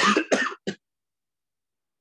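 A man clearing his throat with three short coughs in quick succession, all in the first second.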